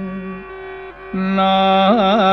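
Carnatic classical music in raga Hindolam: a long held note over a steady drone fades and dips about half a second in. Just after a second the melody returns louder, with wavering gamaka ornaments.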